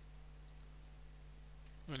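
Low steady electrical hum and hiss from the recording chain, with a single faint click about half a second in.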